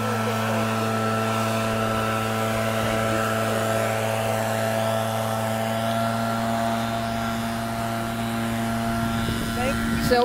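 A steady machine hum: a low drone with several fainter steady tones above it, unchanging throughout.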